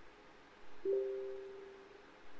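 Short computer alert chime: two steady notes that start a little under a second in and fade away over about a second, as a Windows dialog pops up.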